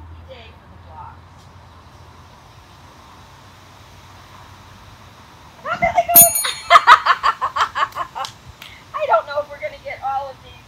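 Cardboard cereal boxes toppling one after another like dominoes along a wooden bench, the last one knocking a small bell that rings briefly, about six seconds in. A woman's voice rises loudly right after, together with the bell.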